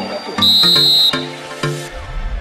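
One short, steady blast of a referee's whistle, under a second long, over background electronic music with a beat.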